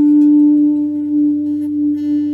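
Ambient electric guitar holding a single sustained, pure-toned note that swells in and rings steadily like a bowed or drone tone, part of an improvised ambient piece.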